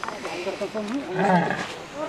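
A dromedary camel groaning, a low grumbling call that is loudest past the middle, with people's voices mixed in.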